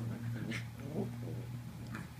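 Two small dogs, a Morkie and a Schnauzer, play-growling as they wrestle, with a few sharp scuffling clicks, over a steady low hum.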